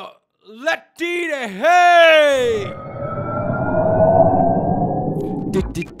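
A man's voice crying out in long, swooping, siren-like wails for about two seconds, followed by a loud rushing noise lasting about three seconds. Music with a plucked-guitar beat starts just before the end.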